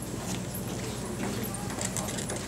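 Hall room tone before a stage talk: a low audience murmur with a few scattered light knocks or footsteps, over a steady low hum.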